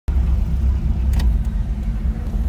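Mk1 Jetta's 3.6 L VR6 engine idling, heard from inside the cabin as a steady low rumble.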